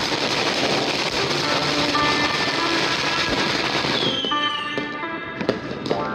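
Dense, rapid crackling of firecrackers and fireworks going off together, thinning to scattered cracks about four seconds in.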